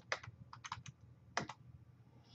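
Faint keystrokes on a computer keyboard as a short shell command is typed and entered: a quick run of separate key clicks in the first second, a pause, then two more presses about a second and a half in.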